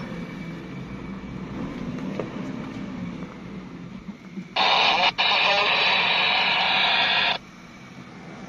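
Low engine and cabin rumble from a Suzuki Jimny crawling along a rough track. About four and a half seconds in, a two-way radio in the cabin opens with a loud, crackly burst of transmission hiss that lasts about three seconds and cuts off abruptly.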